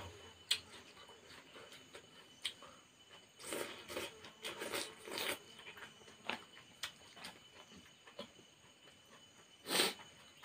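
Eating by hand from a banana leaf: fingers picking at the food and chewing, heard as a scatter of small clicks and smacks, with a cluster of louder rustling, smacking sounds around the middle and another just before the end.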